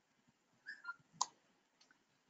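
A few faint clicks and taps of a stylus on a tablet screen during handwriting, the sharpest a little after a second in.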